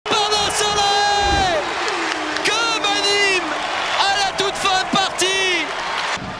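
Men's excited shouting in long drawn-out cries that slide down in pitch, over a cheering handball crowd, with a few sharp knocks.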